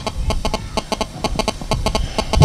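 A quick, uneven series of short clicks, more than a dozen in two seconds.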